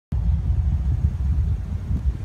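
A loud, uneven low rumble with no clear tone, starting the moment the recording begins.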